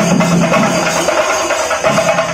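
An ensemble of chende (chenda) drums, cylindrical drums beaten with sticks, played together in a fast, dense, continuous rhythm. The low booming part falls away briefly just after the middle, while the sharp stick strokes carry on.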